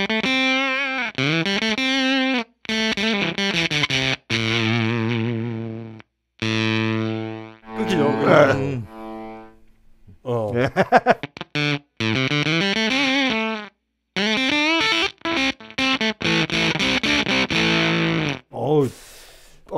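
Electric guitar played through a Crazy Tube Circuits Limelight germanium fuzz pedal with the gain turned up, into a Fender '65 Twin Reverb amp. Thick fuzzed notes with vibrato and bends cut off abruptly into short gaps several times: the choppy, sputtering break-up typical of a germanium fuzz.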